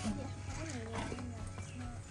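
Quiet voices talking briefly over soft background music.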